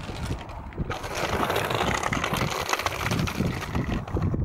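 Gravel crunching as a child's small bicycle rolls up close on a gravel path, a dense crackle that thickens about a second in.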